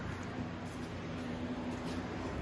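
Quiet indoor room tone with a faint steady low hum.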